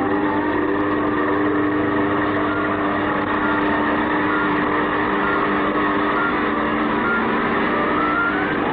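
A steady electronic machine hum with a whine that slowly rises and falls, the sound effect of a sci-fi torture table running.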